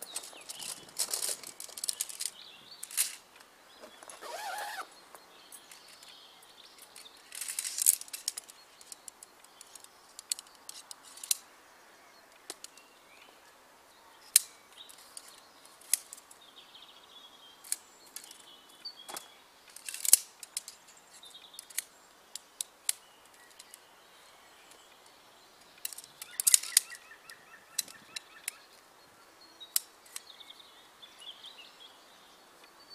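Heavy canvas swag rustling as it is handled, then a string of sharp metal clicks and taps as the sectioned hoop poles are fitted together.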